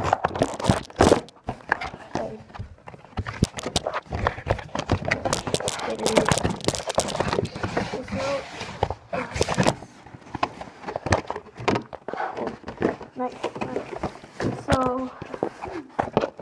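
Skullcandy headphones and their packaging being handled and unpacked: a rapid, irregular run of clicks, knocks and rustles. A voice is heard briefly near the end.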